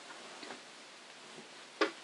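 A few faint clicks and handling noises as a bassoon is shifted about, with one sharper click near the end.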